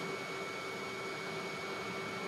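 Steady background hum with a few faint constant tones: room tone inside a motorhome, with an appliance or air-handling unit running.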